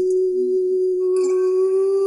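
A held, wordless sung note, a steady hum-like tone, with a second, higher note joining about a second in.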